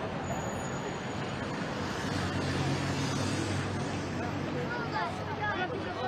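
Road traffic: a motor vehicle's engine hums past for a couple of seconds, over the steady noise of a crowd walking and talking along the roadside.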